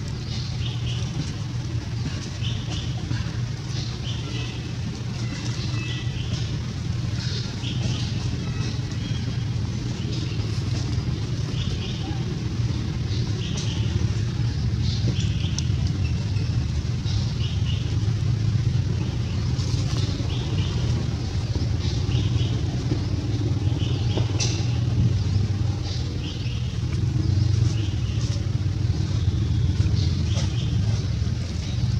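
A steady low engine rumble, swelling a little about halfway through and again near the end, with short high chirps every second or so.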